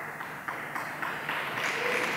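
Audience applause, a dense patter of many hands clapping that grows steadily louder.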